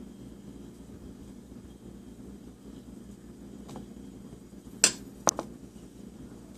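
Sharp clinks of something hard knocking against a glass Pyrex baking dish: a faint one, then a loud one near the end, followed quickly by two more, over a low steady hum.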